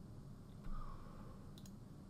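Quiet room tone with a soft bump about two-thirds of a second in, then a couple of small, quick clicks near the end.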